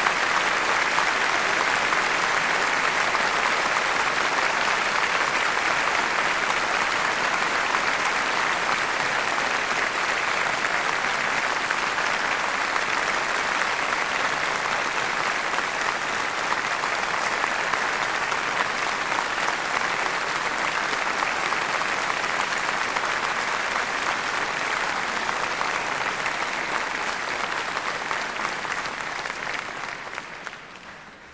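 Theatre audience applauding, a long, steady, dense ovation that begins to die away near the end.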